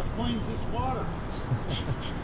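Faint, brief voice sounds, a quiet word or murmur or two, over steady low outdoor background noise.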